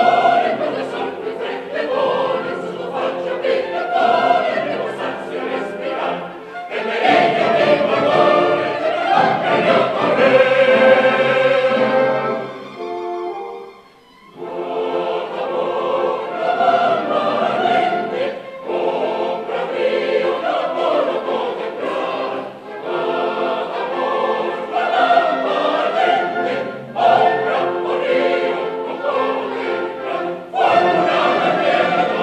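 A mixed chorus sings a stage-musical number with musical accompaniment. It swells into a loud held passage that cuts off about halfway through, pauses briefly, then the chorus starts again.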